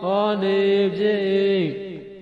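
A voice reciting Pali text in a chanted, monotone style, holding long level notes. Its pitch falls at the end of the phrase, just before a brief pause at the end.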